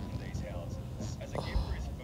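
Quiet, indistinct speech over a low rumbling noise.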